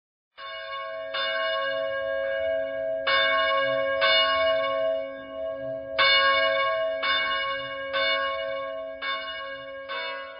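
A church bell ringing, struck about once a second, around ten strikes in all, each stroke humming on into the next.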